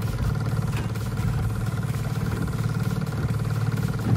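Boat's outboard motor running steadily at trolling speed, a constant low hum.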